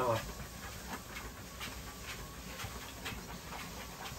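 A Canary mastiff panting as it walks on a motorized dog treadmill, its paws padding on the belt with faint, uneven steps a few times a second.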